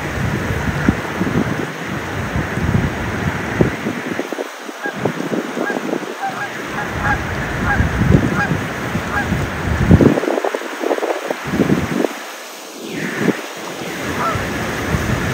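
Canada geese honking, a run of short honks, over the irregular splashing of mute swans running across the water to take off.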